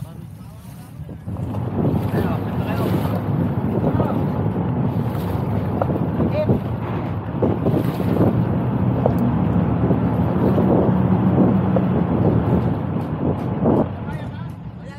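Wind buffeting the microphone, with water noise, as a small wooden bangka moves across the sea. The noise starts up sharply about a second in and stays loud and rough.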